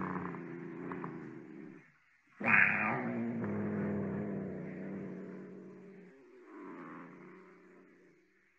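A cat purring in long spells. The first spell fades out about two seconds in; the next starts suddenly and loudly about half a second later and dies away over a few seconds, with a softer spell near the end.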